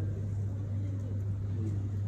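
A steady low electrical-sounding hum, one unchanging tone, with faint background chatter of a room full of people beneath it.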